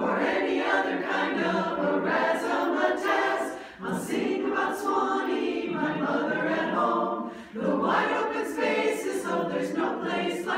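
A women's chorus singing together in harmony, the sound broken by two short pauses for breath, about four and seven and a half seconds in.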